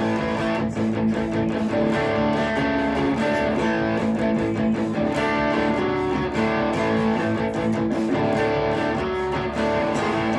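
Les Paul electric guitar played through an amp with a JHS Bonsai overdrive pedal on its OD-1 setting: overdriven strummed chords in a steady rhythm.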